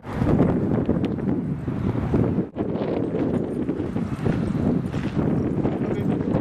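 Wind buffeting the camera microphone: a continuous gusty rumble with a short break about two and a half seconds in.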